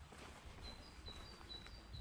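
A songbird singing a quick run of short, high whistled notes that alternate between two pitches, starting about a third of the way in. A faint, low, steady rumble lies underneath.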